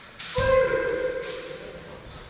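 A kendo fencer's kiai: one long, high shout that starts about a third of a second in, holds for about a second and then fades.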